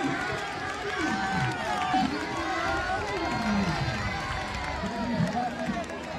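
A large outdoor crowd of spectators, many voices shouting and calling out over one another in a steady hubbub.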